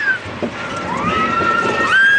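A child's high-pitched scream on a spinning amusement ride: a short cry falling away at the start, then a long rising squeal that holds steady.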